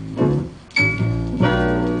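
Recorded music played through Aiwa SX-NH66 loudspeakers on a vintage hi-fi system; it dips briefly, then a held chord comes in about three-quarters of a second in.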